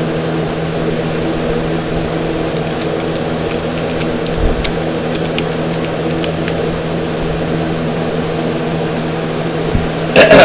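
A steady low mechanical hum with several fixed tones, with a few faint clicks scattered through it.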